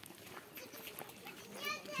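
Faint background chatter of several people talking outdoors, with one higher-pitched voice coming through a little more clearly near the end.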